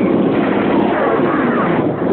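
Steady, loud vehicle engine noise with a few faint wavering pitch glides, muffled on an old soundtrack.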